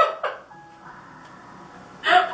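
Laughter trailing off within the first half second, then a quiet room with a few faint steady tones.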